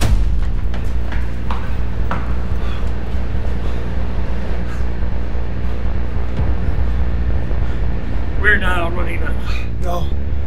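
Film-score music holding a steady low drone, with out-of-breath panting over it and a short wavering vocal sound about eight and a half seconds in.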